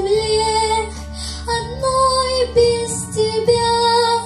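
A young girl singing into a microphone over musical accompaniment, holding long sung notes with a short break about a second in.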